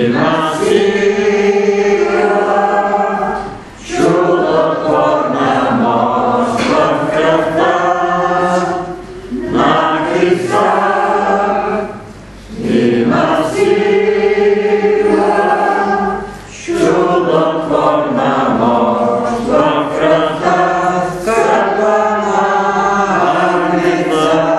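Congregation singing a hymn together, in sung phrases a few seconds long with brief pauses between them.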